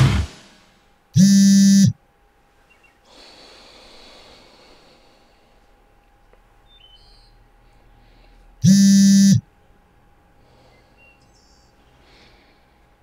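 An alarm buzzing twice: two short, loud, even electronic buzzes, each under a second long and about seven and a half seconds apart, going off while the sleeper stays asleep. A faint breath is heard between them.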